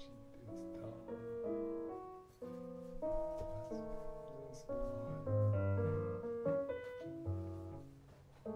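Electronic keyboard playing a free-improvised string of held notes and chords, changing several times a second, with low cello notes sounding underneath in the middle and near the end.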